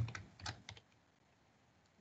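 Computer keyboard typing: a quick run of about five light keystrokes in the first second.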